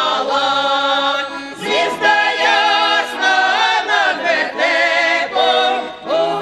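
Women's folk choir singing a Ukrainian carol in several-part harmony, loud, open-voiced and with wide vibrato on held notes, breaking briefly between phrases about two seconds in.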